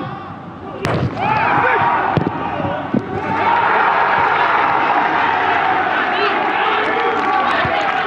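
Two or three sharp thuds of a football being struck in the first three seconds. Then many men shouting and cheering together in a goal celebration.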